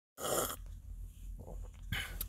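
A person slurping a sip of coffee from a cup, a short hissing slurp about a quarter-second in, followed by quieter mouth and breath sounds and a small click near the end.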